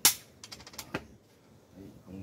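Wooden xiangqi pieces clacking on the board: one sharp clack as a piece is set down, then a few lighter clicks as pieces are handled and put aside.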